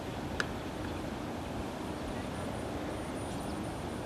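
Steady outdoor background noise with a faint low hum, and one sharp click about half a second in.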